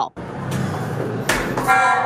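Motion-triggered alarm on a stairwell security camera going off near the end: a loud, steady, horn-like electronic tone, set off by a person walking past the camera. Before it there is handheld rustling and a single knock.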